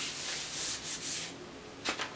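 A hand rubbing a sheet of paper pressed onto a gel printing plate: soft, even scraping and swishing that fades after about a second and a half. It is burnishing to pull up the paint held in a stencil's openings. A short crisp paper sound comes near the end as the sheet starts to lift.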